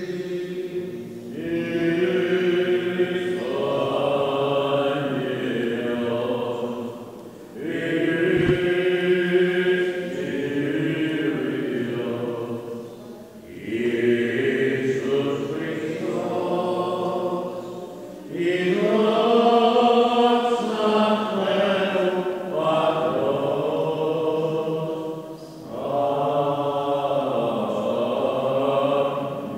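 Male cantors singing Greek Orthodox Byzantine chant: long, slow, drawn-out phrases with held notes, broken by brief pauses for breath about every five or six seconds.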